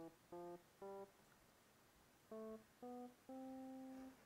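GarageBand's Classic Electric Piano software instrument playing back a short phrase of single notes, quietly: three short notes, a pause of about a second where the split regions have been moved apart, then two short notes and a longer held one.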